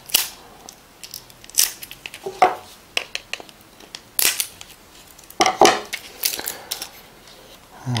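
Opened plastic vitamin bottle and its packaging being handled: a string of short crinkling, tearing and clicking noises, with the loudest about four seconds in and again around five and a half seconds.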